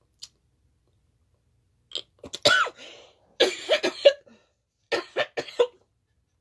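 A woman coughing in a string of short, harsh bursts as she chokes up with emotion, starting about two seconds in.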